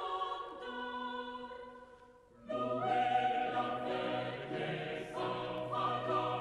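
Background choral music with sustained sung notes. One phrase fades out about two seconds in, and a fuller passage with a low held bass enters half a second later.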